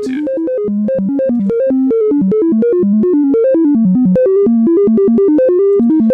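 Modular synthesizer oscillator stepping through random pitches, several short notes a second, each starting with a click. Its pitch input gets the Wogglebug's random voltage, attenuated through Channel Saver to one or two volts, so the notes wander only within a narrow range.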